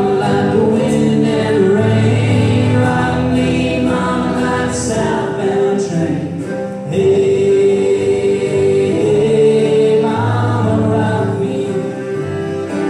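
Live acoustic folk band playing: singing over strummed acoustic guitar and fiddle, with a long held note near the middle.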